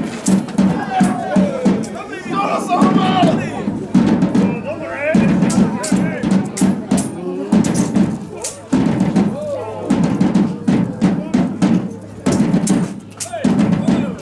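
A drum beating a fast, steady rhythm, with sharp clacks of swords striking each other in a staged fencing bout.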